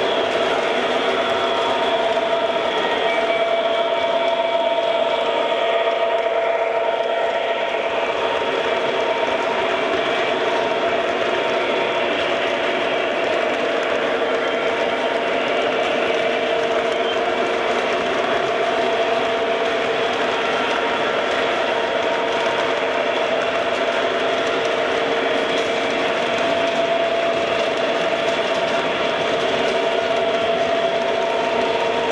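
MTH O gauge model diesel locomotive pulling a freight train on three-rail track: the steady running of its motors and gearing and the wheels rolling over the rails, with a steady whine.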